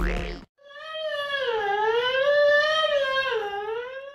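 Electronic outro music cuts off about half a second in, then one long, high, wavering vocal wail is held for about three seconds, its pitch slowly sliding up and down.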